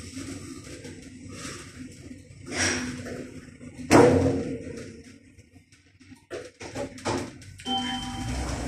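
Schindler 5400 lift car travelling down between floors: a steady low hum with scattered knocks, the loudest a sharp knock about four seconds in. Near the end a run of clicks, then a short electronic tone, as the car arrives and the glass doors begin to slide open.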